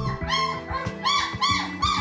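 Young puppies crying in a quick series of about five short, high whimpers, over background music.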